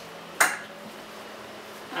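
A single sharp click or knock about half a second in, against quiet room tone.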